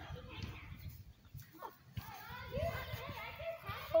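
Faint, indistinct child's voice in short bits, mostly in the second half, over a low rumble.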